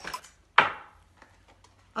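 A small cardboard product box being handled on a tabletop: one sharp knock about half a second in, then a few faint light clicks.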